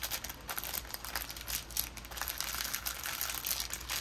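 Clear plastic packaging crinkling as small bags of diamond-painting drills and the plastic sleeve of the canvas are handled, an irregular run of small crackles.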